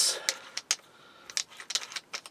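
A few scattered light clicks and taps, with no motor running: handling noise from the cordless drill and the dowel clamped in its chuck.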